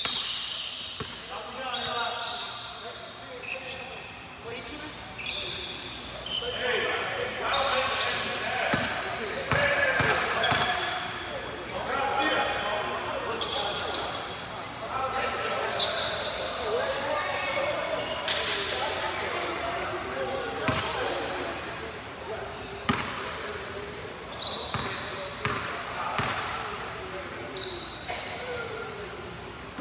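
Basketball bouncing on a hardwood gym floor during a game, with players' and spectators' voices carrying through a large gym hall.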